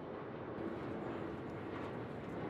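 Steady outdoor airport ambience: a low, even rumble and hiss with no distinct events.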